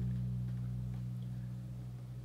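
Hollow-body electric bass holding a low B, fretted at the seventh fret of the E string, and slowly dying away. It is the last note of an ascending E blues scale.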